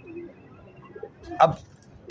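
Domestic pigeons cooing softly in their loft.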